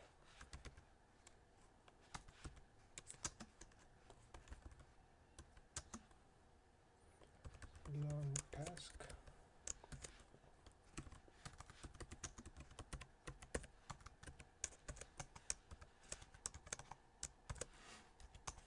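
Faint typing on a computer keyboard: irregular runs of key clicks, sparse in the first half and dense in the second, with a brief murmur of voice about eight seconds in.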